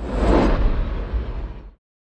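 Whoosh sound effect over a low rumble for a spinning logo animation. It swells about half a second in, then fades and cuts off shortly before the end.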